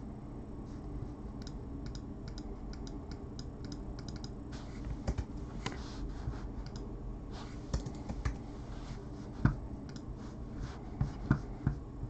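Typing on a computer keyboard: keys clicking at an irregular pace, with a few louder clacks in the last few seconds, over a steady low background hum.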